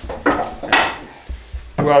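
Metal clamps clinking and knocking against the wooden boards as they are handled, a few sharp clanks in the first second.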